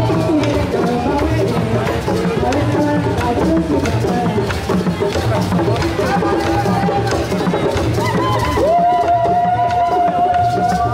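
Live hand drums played in a driving rhythm under group singing or chanting for a dance. Near the end a single high note swoops up and is held steadily.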